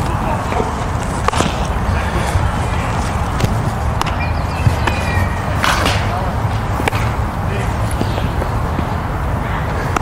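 Steady low wind rumble on the microphone, with faint distant voices and a few sharp knocks, the loudest a little before six seconds in.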